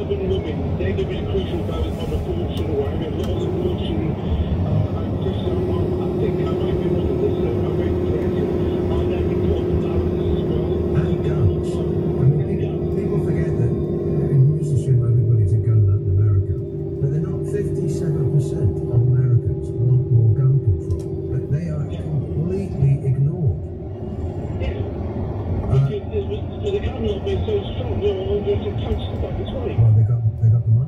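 Steady road and engine rumble inside a car at motorway speed, with indistinct voices over it and a held tone that runs for about sixteen seconds from a few seconds in.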